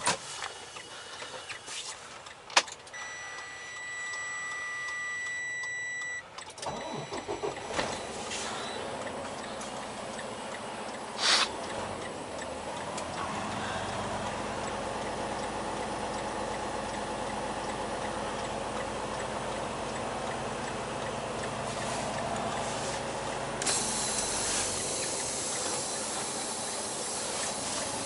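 Inside a semi truck's cab: a steady electronic warning tone for about three seconds, then the diesel truck running as it pulls away, with one short burst of air hiss about eleven seconds in.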